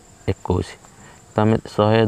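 A man's voice speaking Odia in short phrases, over a faint, steady high-pitched tone.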